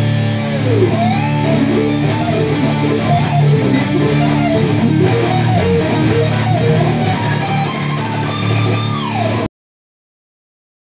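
Loud electric guitar music: fast lead runs over held lower notes, with a note sliding down in pitch near the start and another near the end. It cuts off suddenly near the end.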